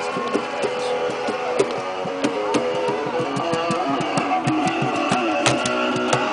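Strummed guitar music, steady throughout, with many short sharp clicks or taps over it.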